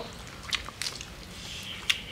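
People biting and chewing crispy deep-fried chicken wings: a few short crunches and crackles over a low background.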